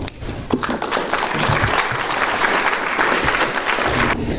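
An audience applauding after a talk, starting with a single knock about half a second in, then building into steady clapping that stops suddenly at the end.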